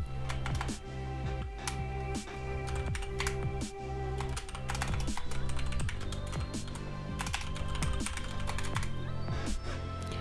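Typing on a computer keyboard: a run of irregular key clicks, over steady background music.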